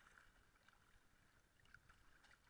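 Near silence, with faint small splashes and lapping of sea water against a GoPro held at the water's surface.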